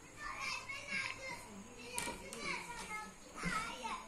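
Children's voices calling and chattering, high and unclear, coming and going, with two sharp clicks a little after two seconds in.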